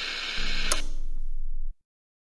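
The tail of the podcast's outro music: a low sustained sound with one sharp click, cutting off abruptly near the end.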